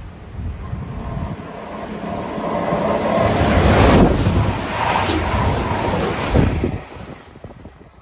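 Class 222 Meridian diesel multiple unit passing through the station at speed without stopping. Its rumble builds over a few seconds, peaks about four seconds in, then falls away quickly near the end.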